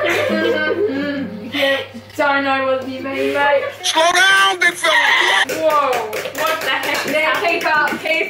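Several excited, high-pitched girls' voices calling out and laughing without clear words, with a few sharp hand slaps in the second half.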